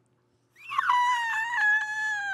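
A man's long, high falsetto scream, starting about half a second in after a brief silence, its pitch sliding slowly downward as it is held.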